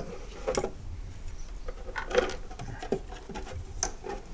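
Light handling noise of the back panel of an old tube radio being worked loose and lifted off its cabinet. A few sharp clicks and knocks come through, the loudest about two seconds in.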